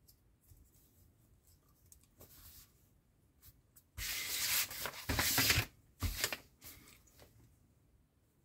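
Rubbing and rustling of hands against paper and a small plastic model part: a soft rub about two seconds in, then a sudden, louder scratchy rubbing starting about four seconds in, running for under two seconds, followed by two shorter strokes.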